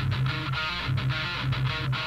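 Recorded rock song playing back: the introduction, with guitar and bass repeating a steady rhythmic figure.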